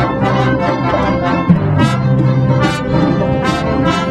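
Live orchestra playing loudly, brass leading over strings, on long held chords.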